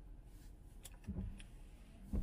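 Car windshield wiper running a sweep across the glass, heard from inside the cabin: a faint motor whir with a couple of light clicks, and a low thunk about a second in.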